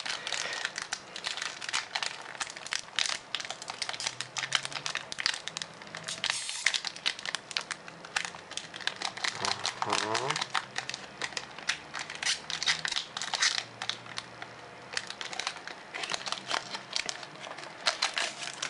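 Foil booster-pack wrapper of Pokémon trading cards crinkling and crackling in the fingers as it is worked open by hand, with dense sharp crackles throughout.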